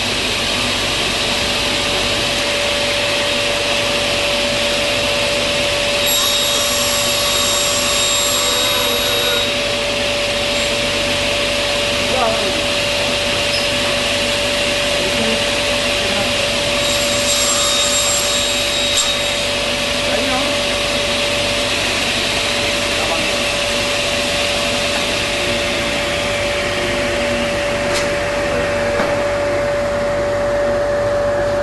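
Sliding-table table saw running with a steady whine. Its blade cuts wood twice, about six seconds in and again around seventeen seconds, and each cut adds a high-pitched ring over the motor.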